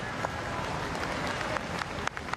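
Crowd of spectators applauding a boundary four, a steady wash of clapping.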